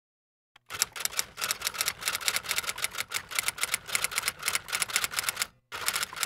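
Typewriter sound effect: rapid keystrokes clatter for about five seconds, starting just under a second in. After a brief pause near the end, another run of keystrokes begins.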